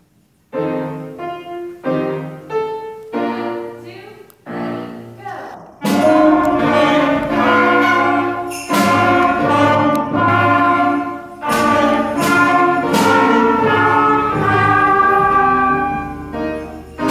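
Beginner fifth-grade school band of flutes, clarinets, brass and mallet bells playing a simple melody. It opens with a few separate, detached notes, then about six seconds in the whole band comes in, fuller and louder.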